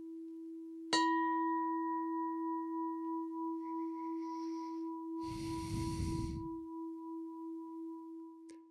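A meditation bowl-bell, already faintly ringing, is struck again about a second in. It rings with a steady low tone and a few brighter overtones that fade within seconds, leaving the low hum to die away slowly with an even wavering beat. A brief soft rush of noise comes about five seconds in.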